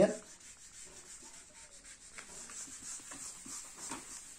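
A whiteboard duster rubbing across a whiteboard, wiping off marker writing: a faint, uneven rubbing in quick irregular strokes.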